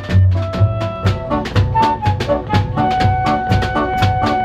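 A live acoustic band playing an instrumental passage: a flute holds melody notes over acoustic guitar, upright double bass and a drum kit keeping a steady beat.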